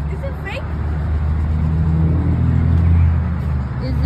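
A steady low mechanical drone, like an engine running, that swells about three seconds in, with faint voices in the background.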